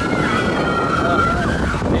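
Water rushing around a round raft on a river rapids boat ride, a steady loud churning, with wind buffeting the microphone.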